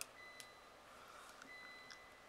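Near silence: room tone, with a faint thin high tone that comes and goes and a couple of faint ticks.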